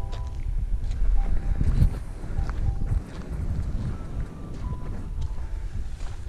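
Wind buffeting the camera microphone: a rough, gusting low rumble that swells about a second in and eases around three seconds in.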